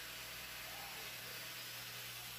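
Faint steady hiss with a low hum: room tone. The running saw seen cutting the tile is not heard.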